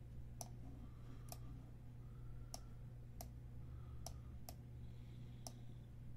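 Faint, sharp clicks of someone working a computer, about seven of them at irregular intervals of roughly a second, over a steady low electrical hum.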